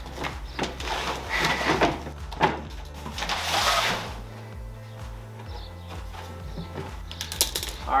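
Background music with a steady bass line, under scattered rustles and knocks as a plastic cooler is handled and its lid shut, with a few sharp clicks near the end.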